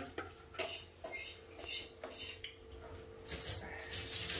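Metal utensils clinking and scraping against steel dishes: a scatter of light, separate clinks over a faint steady hum.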